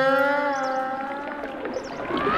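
A single held note from the film's background score, with a slight waver, fading away.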